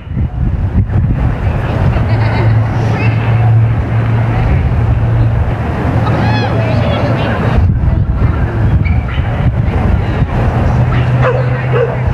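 Wind rumbling on the microphone over indistinct distant voices, with a steady low hum underneath.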